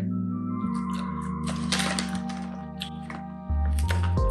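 Background music with steady held tones, its bass coming in loudly near the end; over it, a spell of crisp crackling in the middle as a crunchy wheat-gluten snack is chewed.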